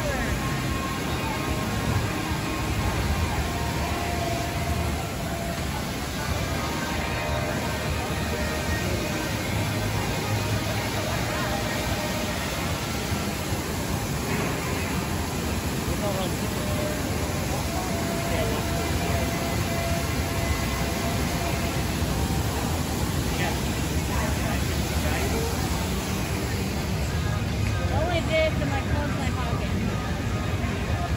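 Outdoor amusement-park ambience: faint music and distant, indistinct voices over a steady low rumble.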